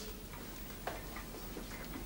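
A clock ticking faintly in a hushed room, a few soft ticks about half a second apart.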